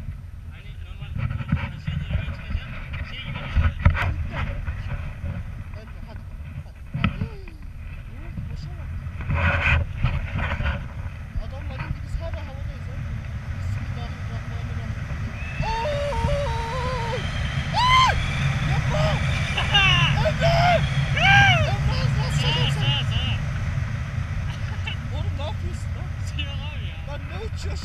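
Wind buffeting the camera microphone in flight under a tandem paraglider: a steady low rumble with scattered knocks. From a little past the middle, a voice gives short, high-pitched shouts and whoops.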